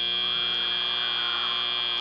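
FIRST Robotics Competition field's end-of-match buzzer sounding as the match timer reaches zero: a steady, unwavering electronic buzz that cuts off suddenly near the end.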